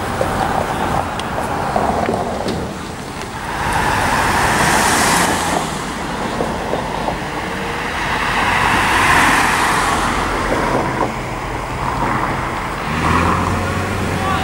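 Road traffic on a street: two vehicles pass, one about four seconds in and another about nine seconds in, each a swell of tyre and engine noise. A low engine hum comes in near the end.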